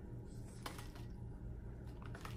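Faint handling of a small clear plastic package on a plate: a few soft clicks and crinkles, about two of them clearer, over a low steady hum.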